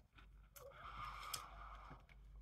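Faint, soft chewing of a light, airy puffed corn snack with the mouth closed; otherwise near silence.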